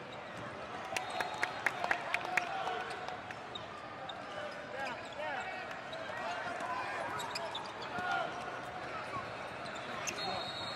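A basketball dribbled on a hardwood court in a large hall: a quick run of about six sharp bounces a second or so in, then scattered bounces. Voices chatter in the background.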